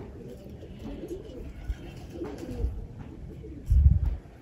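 Domestic pigeons cooing faintly, with a loud low thump just before the end.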